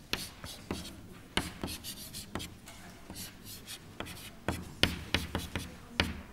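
Chalk on a blackboard: a quick, irregular run of short taps and scratchy strokes as lines and letters are drawn.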